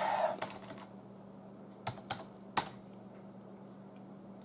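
A loud breath out at the start, then a few scattered keystrokes on a computer keyboard, the last and loudest about two and a half seconds in, over a faint steady hum.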